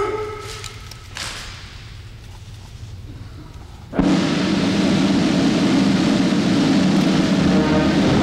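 Quiet hall sound for the first half, then band music starts abruptly about four seconds in. It is loud and dense at first, and held notes come through near the end.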